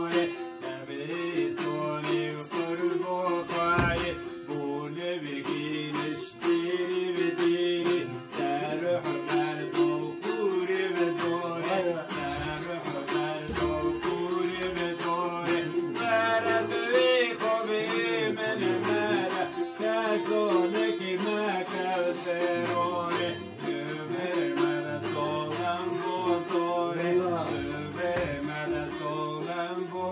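Several bağlamas (saz, long-necked Turkish lutes) played together without singing, in an instrumental passage of an Alevi deyiş: fast plucked strumming with a moving melody over a steady held drone note.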